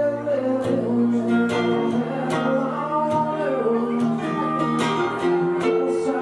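Acoustic guitar strummed steadily while a man sings, in a live solo song.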